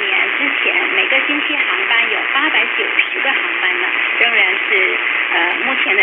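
Mandarin news commentary heard over AM radio on 585 kHz, from Southeast Broadcasting Company, received on a CS-106 portable radio through its internal ferrite-rod antenna. The voice is thin and muffled in the thin AM way, over a faint steady hiss.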